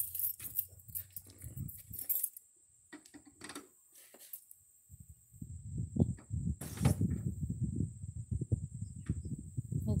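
Metal clicks and rattles from a floor jack and its handle as the jack is released to lower the car, then irregular low rumbling and thumps from about halfway through.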